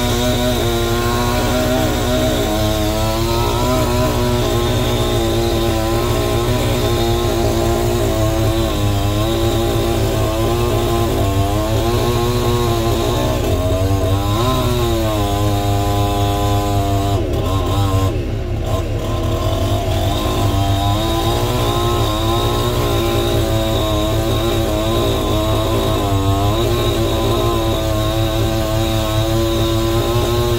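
Chainsaw running and cutting into a bundle of logs held up by a machine's grab, over the steady low running of the machine's engine. The saw's pitch rises and falls a few times in the middle, with a brief dip in loudness.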